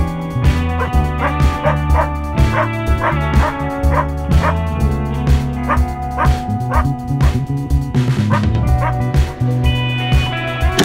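Background music with a steady bass line, and over it a dog barking in short yips about twice a second.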